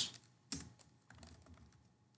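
Typing on a computer keyboard: a sharp keystroke about half a second in, then a run of fainter key taps.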